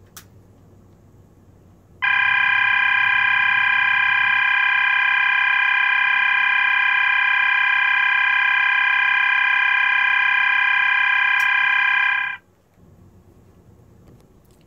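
System Sensor MAEH24MC horn strobe sounding its Fast Dual tone, two pitches (800 and 1000 Hz) alternating rapidly, with its horn stuffed with tissue to muffle it. The tone starts about two seconds in, holds steady for about ten seconds and cuts off suddenly.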